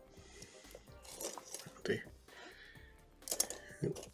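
Light clatter and rattle of paintbrush handles being sorted through in a pot, as a small brush is picked out.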